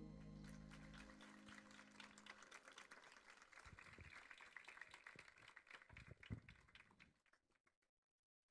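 A band's last sustained chord dying away, then faint audience applause that fades out about seven seconds in.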